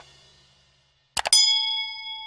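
Subscribe-button animation sound effects: two quick mouse clicks about a second in, then a bright notification-bell ding that rings on steadily and stops abruptly. The last of the music fades out at the start.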